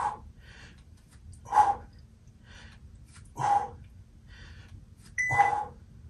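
A man's short, forceful exhales, three of them about two seconds apart, in time with side-plank hip dips. A timer beep starts near the end as the interval counts down.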